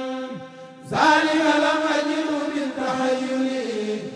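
A kurel of men chanting an Arabic religious poem (a khassida) in unison over microphones. A held note fades out, then about a second in a loud new phrase begins, with long drawn-out notes that slide down near the end.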